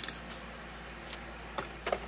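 Light handling of thin card craft pieces: a few faint clicks and taps as the tabs are popped from their sheet and set down, over a steady low hiss.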